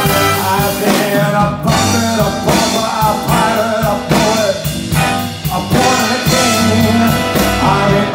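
Live big band music playing continuously: a full band with electric guitar and rhythm section, with a male singer's voice.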